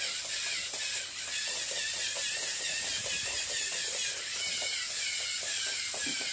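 Lego EV3 eight-legged Theo Jansen-style walker running: its motors and plastic gears whir with a steady high hiss. Its plastic legs clatter and tap on a wooden floor in a quick, uneven patter.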